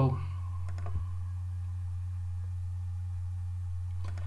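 A few quick clicks of a computer mouse about a second in, over a steady low electrical hum.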